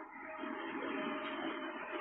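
Radio-drama sound effect of a motor vehicle running, heard from inside, a steady engine and road noise.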